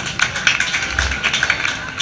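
Live acoustic trio music: a strummed acoustic rhythm guitar, an electric lead guitar and an upright double bass playing an uptempo country song, with a quick clicking beat of about four strokes a second.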